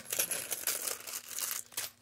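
Small clear plastic resealable bag crinkling and crackling in the hands as it is handled, an irregular run of little crackles and clicks.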